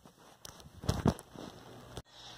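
A few light clicks and knocks about a second in: a smartphone being handled and picked up off the floor just after being dropped, heard through its own microphone.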